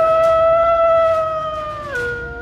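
A wolf howling: one long howl that glides up, holds a steady pitch, and drops to a lower note at the end.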